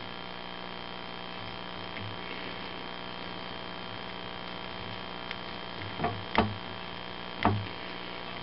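Steady mains hum, with a few soft knocks near the end as hands handle the nylon starter cord at the plastic recoil pulley while tying a knot.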